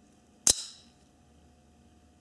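Fourth-generation Dalton Cupid out-the-front automatic knife firing its blade: a single sharp snap about half a second in, with a brief ringing tail as the blade locks open.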